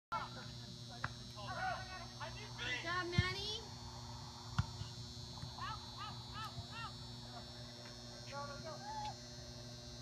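Soccer players shouting and calling to each other across the field in short, distant calls, with a few sharp thuds, the loudest a little over three seconds in, over a steady low hum.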